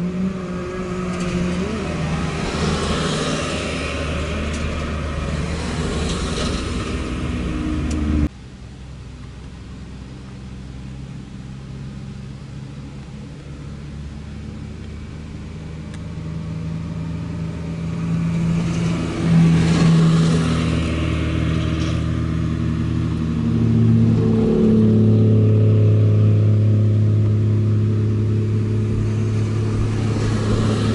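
Vehicles driving in: a flatbed carrier truck's diesel engine running as it rolls past, cut off abruptly about eight seconds in. Then car engines approaching, rising in pitch, and a loud steady engine drone through the last several seconds.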